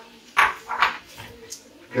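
A small dog barking twice in quick succession, under faint clatter of a wooden spoon stirring rice in a frying pan.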